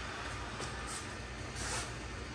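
Robot vacuum cleaner running steadily, with a few brief rustling sounds.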